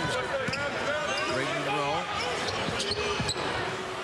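Court sound from an indoor basketball game: the ball bouncing on the hardwood, with short high squeaks and chirps scattered through, and a few sharp clicks about three seconds in.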